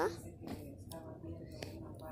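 A girl's voice speaking very quietly, close to a whisper, between louder stretches of talk.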